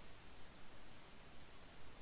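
Faint steady hiss of microphone noise and room tone.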